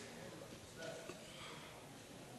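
Faint room noise of a hall with a low, indistinct murmur of voices in the background; no distinct event.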